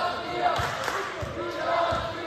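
Basketball dribbled on a hardwood gym floor: a few low thumps about half a second apart, echoing in the hall, with voices talking over them.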